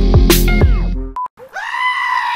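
Upbeat music with a drum beat that cuts off just after a second in, followed by a short beep; then a black-faced sheep starts one long, loud bleat held at a steady pitch.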